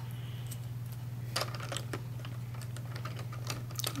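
A few light plastic clicks of LEGO pieces being handled, with a cluster near the end as a hand works the set's seat mechanism, over a steady low hum.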